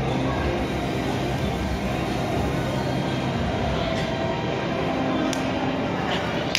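Steady din of an indoor trampoline park hall, with a couple of faint clicks in the second half.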